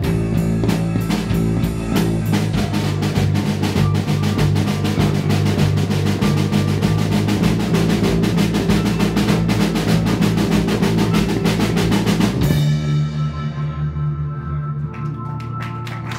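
Live rock band playing: drum kit with busy snare and cymbal hits over electric bass and electric keyboard. About three-quarters of the way through the drums stop and a held bass and keyboard chord rings on as the song closes.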